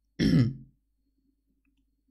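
A single throat clear about a quarter-second in, lasting roughly half a second.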